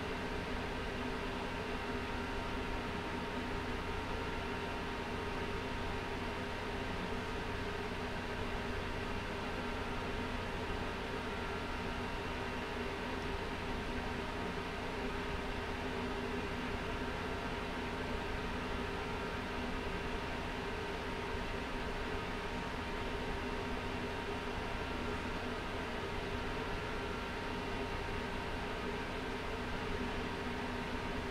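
Steady machine whir and hum, a few fixed tones over an even hiss, typical of running fans such as a computer's or a 3D printer's.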